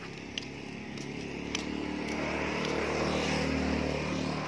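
A motor vehicle's engine passing nearby, its hum growing louder toward the end and then easing off, with a couple of light clicks early on.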